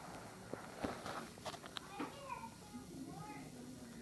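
Faint, high-pitched young children's voices in a classroom, with a few light knocks in the first two seconds.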